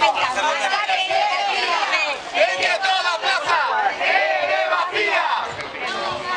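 A crowd of protesters chanting slogans together, many voices shouting at once.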